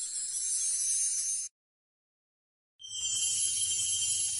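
Two stretches of a high, hissy sound effect, each about two seconds long, separated by about a second of silence: the first stops about one and a half seconds in, the second starts near three seconds and carries a faint low hum underneath.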